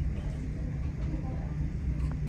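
Room ambience: a steady low hum with faint voices in the background.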